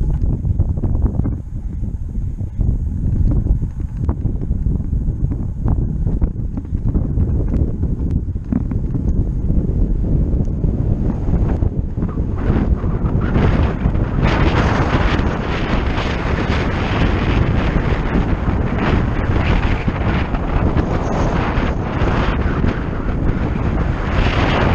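Wind buffeting the microphone while riding downhill: a loud, steady rumbling rush. About halfway through it turns brighter and more hissing as speed picks up.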